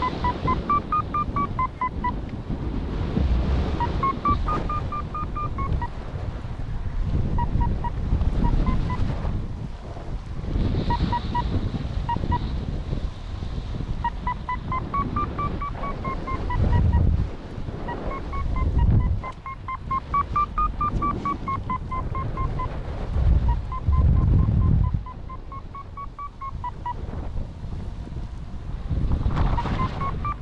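Paragliding variometer beeping in strings of short tones whose pitch rises and falls in slow arcs, the sign of the glider climbing in lift, over heavy wind noise on the microphone that swells in gusts.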